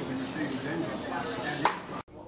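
Indistinct voices talking, with one sharp click near the end.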